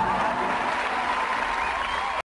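Studio audience applauding steadily at the end of a comedy sketch.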